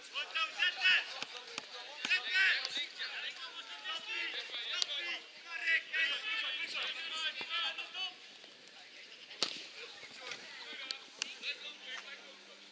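Voices shouting and calling across a football pitch during play, with one sharp thud of a football being kicked about three-quarters of the way through.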